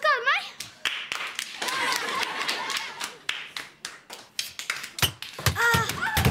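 A few children clapping their hands in quick, uneven applause.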